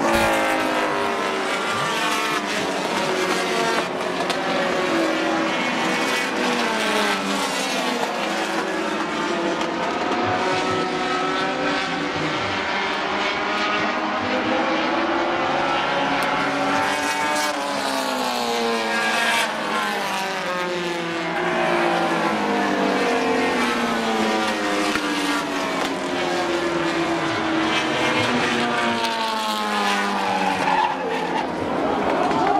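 Several four-cylinder dash-series race cars running at speed on a paved oval. Their engines rise and fall in pitch without pause as they pass and accelerate off the turns.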